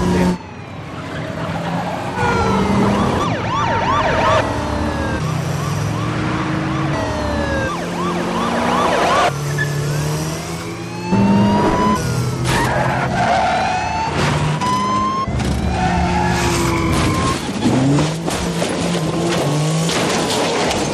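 Police car sirens wailing over car engines revving hard in a high-speed car chase, with tyre skids. Near the end comes a series of sharp impacts as the car flips and rolls over.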